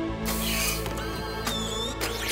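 Cartoon sound effect of a robotic scanner arm unfolding out of a machine: a mechanical whirring sweep, then two sharp clicks and a short whine as the arm locks into place, over background music.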